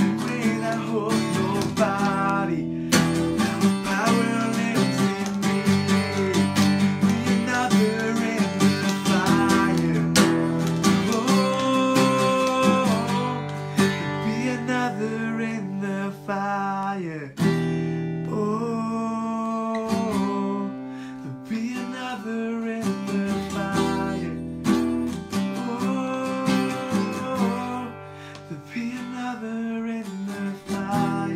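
Takamine acoustic guitar strummed steadily, with a man singing a worship song over it.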